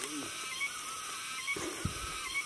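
Quiet forest background with faint, thin high calls wavering throughout, and two soft thumps about one and a half seconds in.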